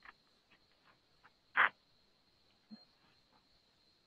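Quiet room tone on a video-conference audio feed, with a faint steady high whine and a few small scattered noises; one brief, louder sound comes about one and a half seconds in.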